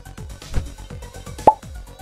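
Electronic background music with a steady, evenly spaced beat. About one and a half seconds in, a short rising 'plop' sound effect is the loudest sound.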